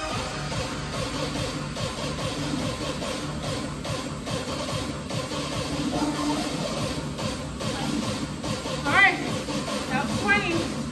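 Background workout music with a steady beat.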